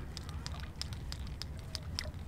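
Walk-the-dog topwater lure being twitched across calm water, making a run of short sharp clicks, about four a second, from the two rattle beads inside it. A low steady rumble runs underneath.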